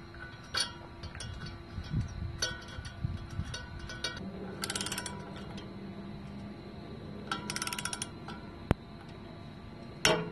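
A few light metal clicks as the impeller bolt is handled and threaded, then a socket wrench on an extension clicking in two quick ratcheting runs as the bolt is tightened into the blower impeller's hub. A single sharp click comes near the end.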